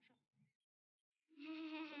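Speech only: after a short pause, a child's voice holds one drawn-out syllable for about a second.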